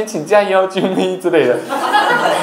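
A man talking and chuckling.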